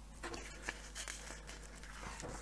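Faint rustle of a glossy magazine page being turned by hand, with a light tap under a second in.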